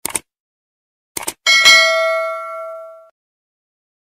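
Like-and-subscribe button sound effect over dead silence: short clicks, then a notification-bell ding that rings out and fades over about a second and a half.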